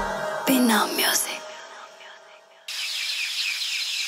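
A brief, fading voice-like sound just after the music stops. About three seconds in, a steady outdoor background begins abruptly: a hiss with small, repeated high chirps.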